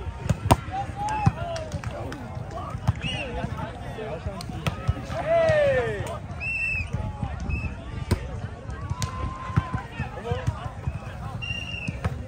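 Players' voices calling and shouting during a grass volleyball rally, with one loud, long falling shout about halfway. Several sharp smacks of hands hitting the volleyball are heard between the calls.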